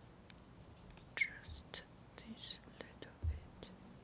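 Fingernail picking and peeling at a damp paper sticker stuck to a plastic bottle: a few short clicks and brief scratchy hisses as the wet paper tears away in small pieces.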